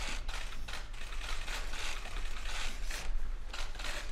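Press camera shutters clicking rapidly in quick, irregular, overlapping runs while a bill is signed.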